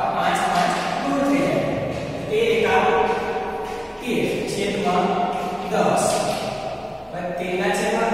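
Speech only: a man's voice explaining a maths problem, in short phrases with brief pauses.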